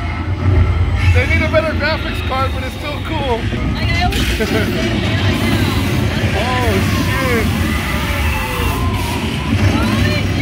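Indistinct voices over the steady low rumble of a moving vehicle.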